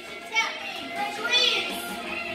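Girls' voices chattering and calling out over one another, with one higher-pitched voice about halfway through.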